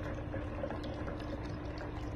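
Milk poured in a thin, continuous stream into an insulated stainless-steel tumbler, a steady pouring trickle into the milk gathering at the bottom.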